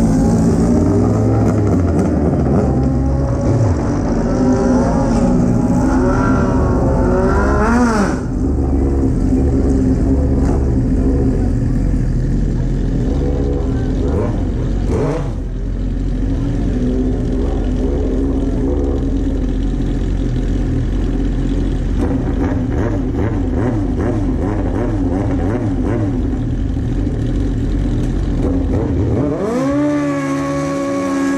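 Sport motorcycle engines idling and revving: the Suzuki GSX-R1000 inline-four the camera rides on runs steadily while nearby drag bikes rev. There are rising and falling revs about four to eight seconds in, and a quick climbing rev right at the end.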